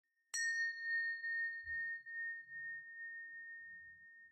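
A bell struck once about a third of a second in, its single clear high tone ringing on with a slight waver and slowly fading.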